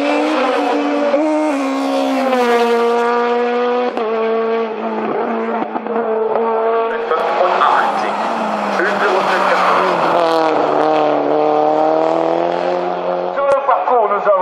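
Hillclimb race cars passing one after another at full throttle. The first car's engine note holds high and then drops away about four seconds in. A second car, a Mitsubishi Lancer Evolution, comes through with its engine pitch falling and rising again as it accelerates past.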